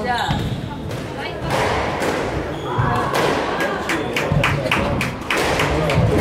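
Squash rally: the ball is struck by rackets and hits the court walls in a series of sharp knocks, with people talking in the background.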